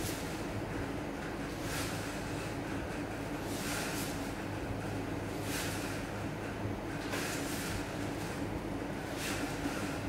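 Four strands of thin jute twine drawn over a firework shell as it is wrapped by hand: a soft rasping swish every one and a half to two seconds, about five in all, over a steady low hum.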